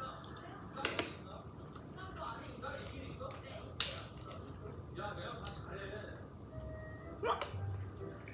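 Faint speech from a television show in the background, with a few sharp clicks and crackles from a plastic water bottle being picked up and handled.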